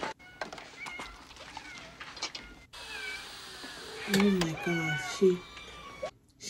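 Film soundtrack with cats meowing, faint in the first half. After a sudden cut, a voice and louder falling calls come in a little past the middle.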